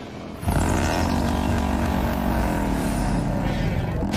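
A loud, steady mechanical roar like an engine or thruster starts about half a second in, its pitch sagging and then climbing again. It comes from an animated episode's sound effects.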